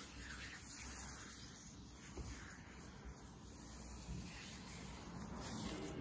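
Quiet, steady background hiss with a couple of faint soft knocks.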